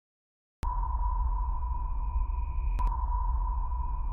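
Electronic sound effect: a steady high-pitched tone over a deep low hum, cutting in suddenly after a short silence, with a brief double click about two seconds later.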